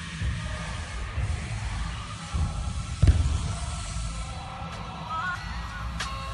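A BMX bike rolling over skatepark ramps, heard as a low rumble, with one sharp thud about three seconds in as the bike lands. Music with a pitched melody comes in near the end.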